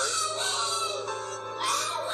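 A toddler girl's high, drawn-out wailing cry over background music.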